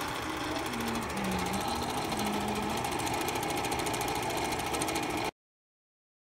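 Bell & Howell 456a 8mm film projector running, its film mechanism making a fast, even clatter. The sound cuts off abruptly a little after five seconds in.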